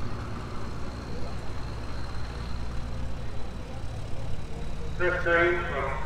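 Outdoor background ambience: a steady low rumble with a faint thin high tone over it, and a person's voice starting about five seconds in.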